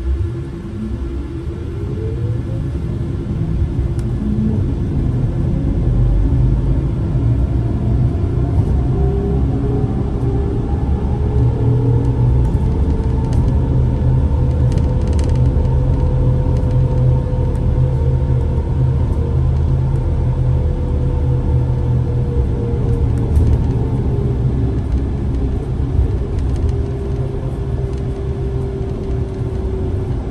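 Solaris Trollino 18 trolleybus's electric traction drive whining as the bus pulls away: the whine rises in pitch over the first several seconds, holds steady, then sinks a little in the second half. Under it runs a steady low rumble of the ride, heard from inside the bus.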